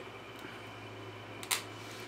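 A low steady hum with one sharp click about one and a half seconds in, as a T-shirt heat press is worked with its handle down.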